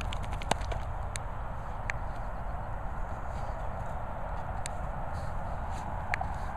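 Two dogs digging and scuffling in loose dirt: scattered sharp clicks and scrapes of paws, a quick run of them at the start and single ones later, over a steady low rumble of outdoor background noise.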